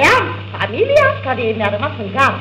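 A man's voice on a 1927 78 rpm comic sketch record yelping in short cries that rise and fall in pitch, played back on a gramophone with a steady low hum underneath.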